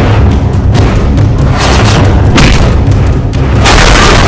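Loud action-film background score with deep, continuous booming bass and several sharp hits cutting through it, the heaviest near the end.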